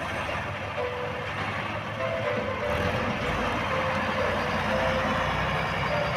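Tractor diesel engine working steadily under load as it pulls a multi-furrow plough through the soil, its low rumble getting stronger about halfway through. A melody runs over it.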